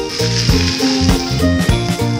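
Background music with a steady beat, over a hiss of thrown water spraying and splashing down onto the wet pavement, strongest in the first second and a half.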